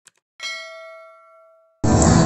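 A short click sound effect, then a single bright bell ding that rings out and fades over more than a second, the notification-bell chime of an animated subscribe button. Loud guitar music cuts in near the end.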